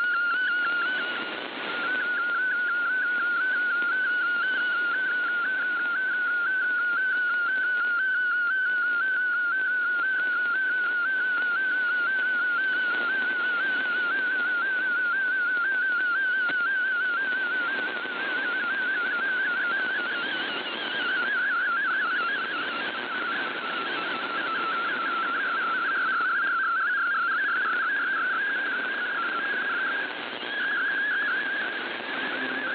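MFSK32 picture transmission received over shortwave radio: a single warbling, whistle-like tone whose pitch wobbles quickly up and down as the image's brightness is sent, over steady radio hiss with a few brief fades.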